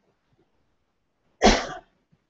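A single short cough about a second and a half in.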